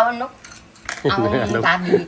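Wooden chopsticks clicking together a couple of times just before a second in, between snatches of women's voices.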